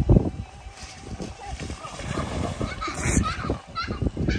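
A thump as a rider on an inflatable float comes down onto a wet, soapy slip-and-slide tarp, followed by irregular scuffing, sliding and splashing. Voices call out briefly near the end.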